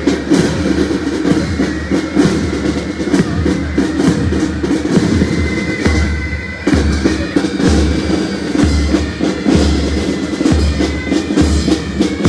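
Marching band drums playing a marching beat: snare drum strokes over a bass drum that pulses steadily.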